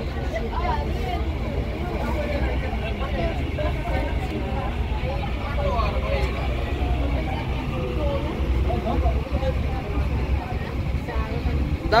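A passenger boat's engine running with a steady low rumble, under the chatter of many passengers talking at once.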